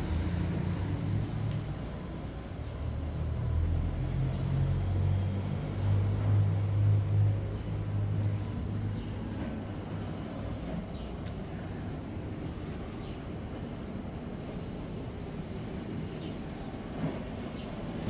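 A low, steady machine hum with a faint rumble. It swells between about three and eight seconds in, then settles to a steadier, quieter drone.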